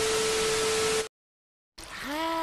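TV static hiss with one steady tone under it, a test-pattern 'no signal' glitch effect lasting about a second and cutting off suddenly.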